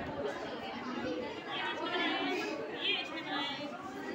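Chatter of several people talking at once in a hall, with overlapping voices and a few higher-pitched voices standing out near the middle.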